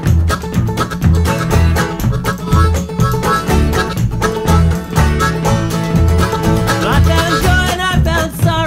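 Instrumental break in a folk string-band song, with no singing. Fast plucked banjo and acoustic guitar picking run over a steady, pulsing bass, and a sliding melody line comes in near the end.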